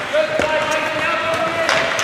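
Sharp knocks of hockey sticks and puck on the ice, one about half a second in and another near the end, under a long drawn-out shout from a spectator.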